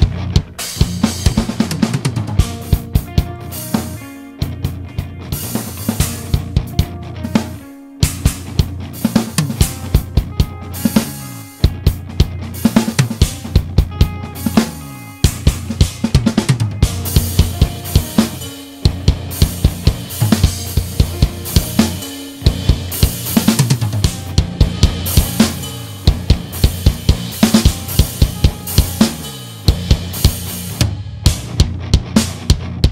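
BFD3 virtual acoustic drum kit playing a rock groove of kick, snare, hi-hat and cymbals over a backing track. The drums are passing through shells-bus compression, EQ and distortion that are being adjusted toward a punchier sound. The groove breaks off briefly every few seconds.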